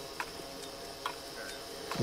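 Faint ticks, about one a second (three in all), over a low steady hum.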